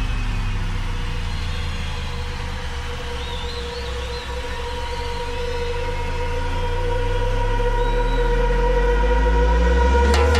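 Electronic dance music breakdown: sustained synth tones over deep sub-bass, with sweeping pitch glides. It builds in loudness over the last few seconds toward a drop.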